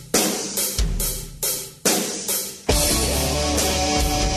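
Opening of a heavy metal song: drum and cymbal crashes hit about every half second, each ringing out. Near the end the full band comes in and plays on steadily.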